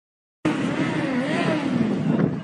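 Dead silence for under half a second, then an abrupt cut into street sound: a vehicle engine passing on the road, its pitch sliding down and back up.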